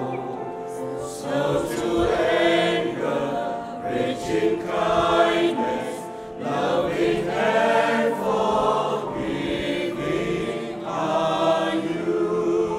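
Mixed church choir singing a hymn, in long held phrases broken by short pauses about six and eleven seconds in.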